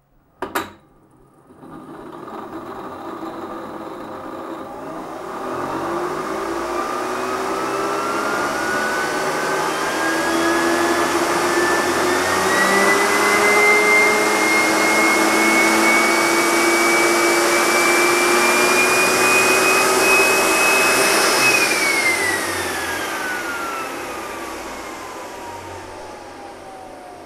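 Electric starter motor driven by a PWM speed controller, run up smoothly: after a click about half a second in, its whine rises steadily in pitch for about twenty seconds. It then falls away over the last few seconds as the power is taken off and the motor winds down.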